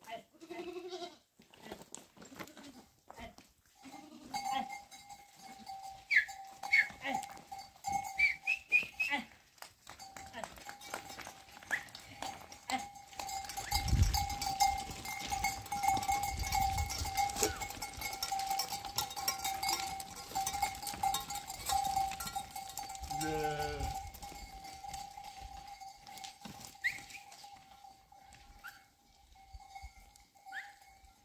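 A herd of goats and sheep on the move over stony ground: a clatter of hooves on loose rock, with a steady bell-like ringing throughout. A goat bleats once near the end.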